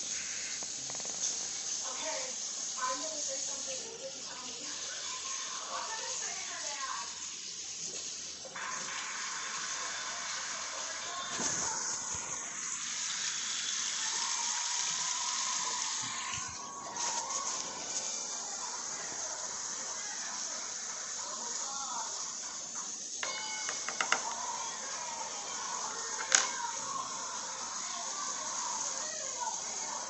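Liquid splashing and running at a kitchen sink for several seconds in the middle, while a bong is being cleaned, over faint talk from a television game show in the background. A couple of sharp clicks come near the end.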